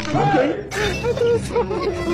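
A woman's wordless vocalising and laughter over background music, with a sudden shattering crash, most likely an added sound effect, about two-thirds of a second in.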